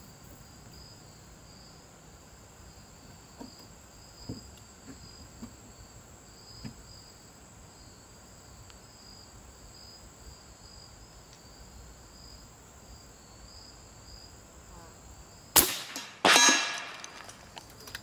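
One shot from a suppressed .357-calibre Bully PCP air rifle near the end: a sharp report, then less than a second later a second sharp crack with a longer ring-out as the slug strikes the coconut target. Crickets chirp steadily throughout.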